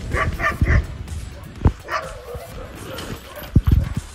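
Chained sled huskies barking and yipping: a quick run of short yips at the start, then single barks, with low thumps near the end. The dogs are worked up as a sled team gets ready to leave.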